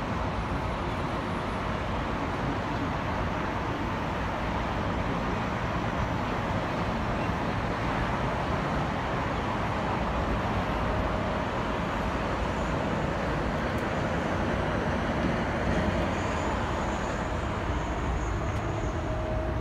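Steady noise inside a moving cable car gondola, a low rumble and hiss of the cabin running along its cable. Faint thin whines come in during the second half.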